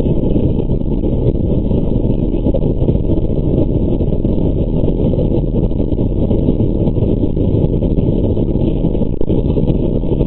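Steady, loud engine and airflow noise of a surveillance aircraft, heard as an even, low-heavy noise through a narrow-band audio feed, with no changes.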